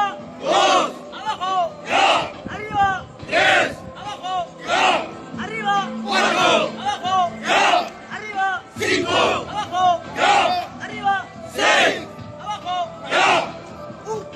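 A large group of recruits shouting together in rhythm, one loud collective shout about every second and a half, keeping time with a drill exercise.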